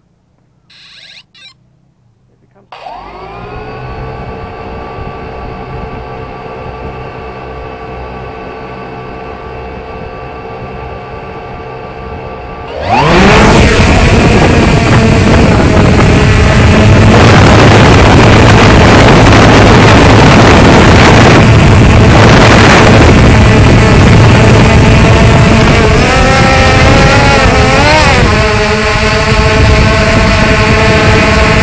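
3DR Solo quadcopter's four electric motors and propellers, heard up close from a camera mounted on the drone. About three seconds in they spin up to a steady idle whine. About thirteen seconds in they rev up sharply to take-off power as the drone lifts off, and the loud whine wavers in pitch near the end as it manoeuvres before steadying into a hover.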